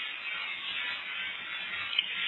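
Steady hiss of an old, narrow-band sermon recording during a pause in the preaching, with no clear tones.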